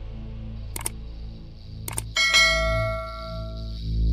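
Intro jingle sound design: a low drone with a couple of short clicks, then a bright bell-like chime struck about two seconds in that rings out for over a second.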